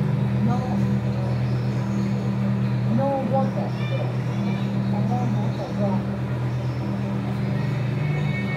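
Steady low electrical hum from running aquarium equipment, with faint, indistinct voices in the background.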